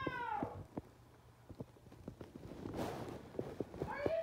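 A cat's meow falling in pitch and ending about half a second in, then scattered light clicks and taps, a brief rustle near three seconds, and the start of another meow at the very end.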